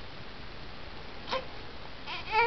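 A young infant gives one short, high squeak of a cry a little over a second in, between longer crying spells, over faint steady room hiss.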